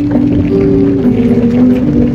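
Acoustic guitar with voices holding long sung notes, the pitch stepping down about a second in, as a song closes.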